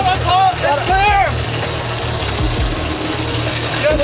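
Excited shouting for about the first second, over the steady low drone of a sportfishing boat's engine and a constant rushing hiss of wind and water.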